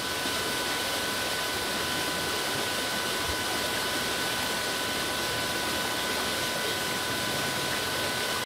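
A small rocky stream rushing over stones, a steady even water noise. Two faint steady high tones run through it.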